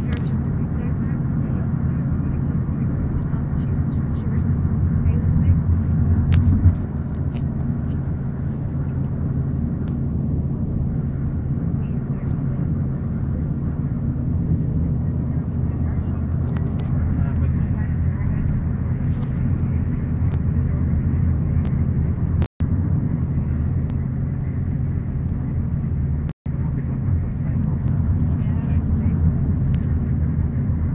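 Car engine and road noise heard inside the moving car, a steady low drone. It swells over the first few seconds and drops back about seven seconds in. Twice near the end the sound cuts out for an instant.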